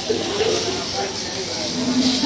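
Spiny lobster sizzling on a hot ridged grill pan, with voices talking over it.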